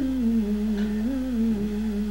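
A person humming a slow tune in held notes that step gently up and down.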